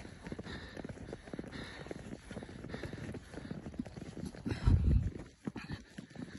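Footsteps crunching through fresh snow at a steady walking pace. A brief low rumble on the microphone about three-quarters of the way through.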